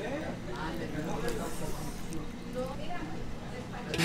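Faint background voices and steady room noise of a busy taqueria, with no loud voice up close.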